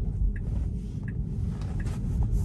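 Low tyre and road rumble inside a Tesla's cabin as the car turns, with the turn-signal indicator ticking faintly about every 0.7 seconds.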